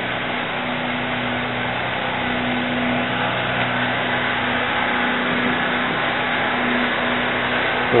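Steady room noise: an even hiss with a low, steady hum underneath, unchanging throughout.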